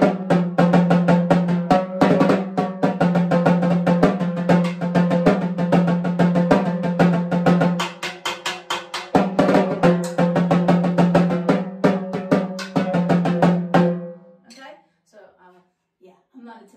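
A pair of timbales played with drumsticks in a fast, continuous rhythm of rapid strokes, the drumheads ringing. The playing thins briefly about halfway through and stops about two seconds before the end.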